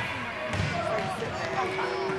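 Indistinct chatter of spectators and children, with a basketball bouncing once on the hardwood court about half a second in.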